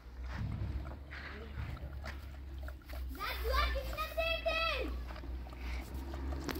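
A high-pitched voice holds a long, drawn-out call for about two seconds midway, rising at the start and dropping away at the end. A steady low rumble lies under it, with a few faint small sounds before it.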